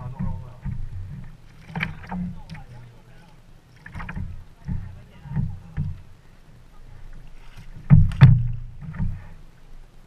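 Small-wave water lapping and slapping against kayak hulls at the waterline in irregular splashes, with the loudest slaps about eight seconds in.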